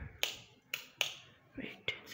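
About five sharp clicks, spaced irregularly, from a wall-mounted ceiling fan speed regulator knob being turned step by step. The owner blames the regulator, which he says has heated up and is not working properly.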